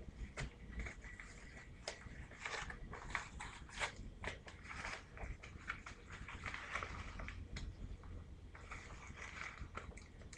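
Packaging being handled and unwrapped: irregular crinkling and rustling of plastic wrap and a padded mailing envelope, with scattered small crackles.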